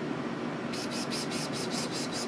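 Steady air-conditioning hiss in a small room, with a run of quick soft rasps, about six a second, starting a bit under a second in.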